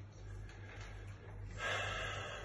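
A man breathing hard against the cold of an ice bath, with one strong, forceful breath about three-quarters of the way through.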